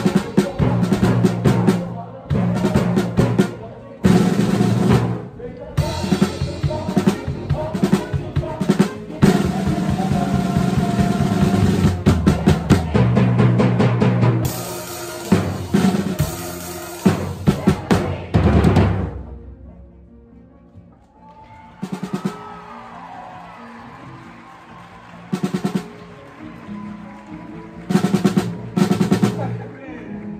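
Drum kit played with sticks, snare and cymbals, along with the rest of a pit band. The busy playing stops about two-thirds of the way in, leaving a quiet stretch, then a few scattered drum hits return near the end.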